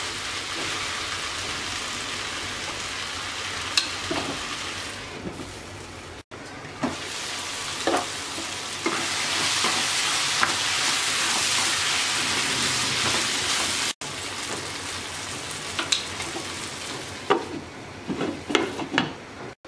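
Watermelon rind and shrimp frying in a pan, sizzling steadily, while a spatula stirs them and scrapes and taps against the pan now and then.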